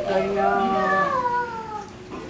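A young child's voice in one long drawn-out call, held and then sliding down in pitch, breaking off near the end.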